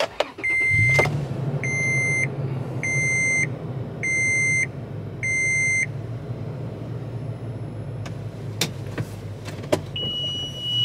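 A 2007 Toyota FJ Cruiser's 4.0-litre V6 starts and idles while the seat-belt reminder chime beeps five times, about once every 1.2 seconds, then stops. With the reminder switched off, this brief chime at start-up is all that remains of it.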